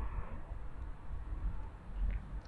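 Faint, steady background noise with a low rumble: room tone, with no distinct event.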